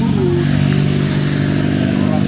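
Motorcycle engine idling steadily at close range, a constant low engine note that does not change.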